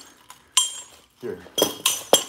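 Chained nunchucks clinking as they are handled: a few sharp metallic clinks with a brief ringing tail, one about half a second in and two close together near the end.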